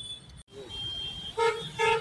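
A vehicle horn in street traffic, sounding two short toots close together near the end.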